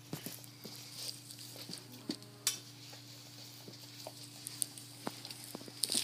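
German Shepherd puppy eating raw chicken chunks from a stainless steel bowl: chewing and licking, with irregular clicks and clinks as his mouth and teeth knock the bowl, one sharper knock partway through.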